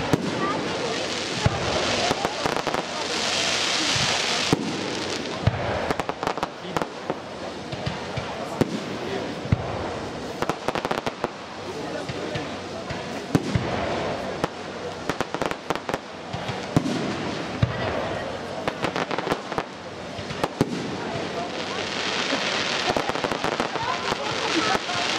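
Fireworks display: aerial shells launching and bursting in a run of sharp bangs, with a steady background rumble. Two stretches of dense hissing come a couple of seconds in and again near the end.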